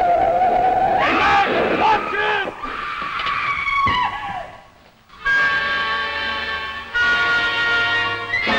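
Car tyres screeching in an old TV soundtrack, a held squeal that wavers and bends, with a short vocal outburst about two seconds in. After a brief dip near the middle, a dramatic orchestral music chord is held for the rest.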